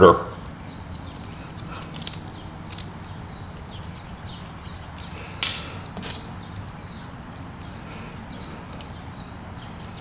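Small metal barrel standoffs being handled and hand-deburred: light metallic clicks and faint scraping, with a sharper clink about five and a half seconds in and another just after, over a steady low hum.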